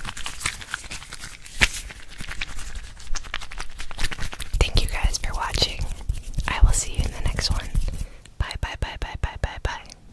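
Close-miked whispering in the middle of the stretch. It is preceded by scattered soft clicks and rustles of a small object being handled at the microphone, and followed near the end by a quick, even run of about a dozen short clicks.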